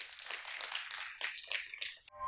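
Audience applause: dense, irregular hand-clapping, fairly faint, dying away near the end.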